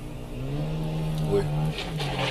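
Car engine and road noise heard from inside the car's cabin, a steady low hum, with a man exclaiming "Oh" near the end.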